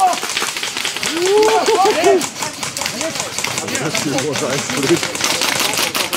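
Airsoft guns firing in rapid clicking runs while players shout to each other.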